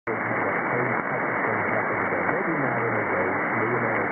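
Long-distance AM radio reception of KDIA on 1640 kHz through a communications receiver in lower-sideband mode: a faint, hard-to-follow voice buried in steady hiss and static. The audio is narrow and muffled, with nothing above about 2.5 kHz.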